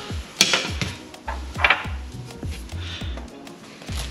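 Background music with a steady bass beat, with two light knocks of kitchen items being handled, about half a second in and again past a second and a half.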